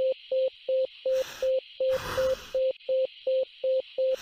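Simulated bedside patient monitor beeping with each heartbeat, short even beeps of one tone about three times a second, matching the displayed heart rate of 180: a tachycardia. A steady hiss sits behind it.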